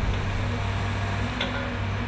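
Steady low rumble with the wash of churning water as a bundle of logs, just dumped into the inlet, splashes and settles. A faint tick comes about one and a half seconds in.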